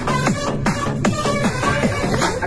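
Background electronic dance music with a steady beat.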